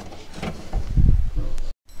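A small wire-mesh door on a puppy pen being pulled shut, a low scraping rumble that is strongest about a second in, then cut off abruptly near the end.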